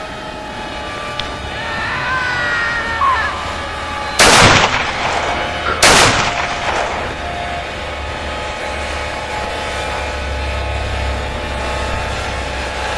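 Two loud gunshots about a second and a half apart, each with a short ringing tail, over background music.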